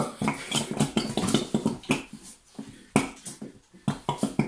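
Squeeze bottles of white PVA glue being pressed out into plastic tubs, spluttering and squelching in a quick, irregular series of short bursts as air and glue are forced out of the nozzles.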